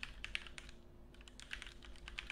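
Typing on a computer keyboard: faint, irregular clicking keystrokes.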